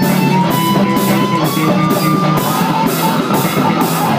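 Live rock band playing an instrumental passage on electric guitars and drum kit, loud and steady. A high held note climbs slowly in pitch over a cymbal beat about twice a second.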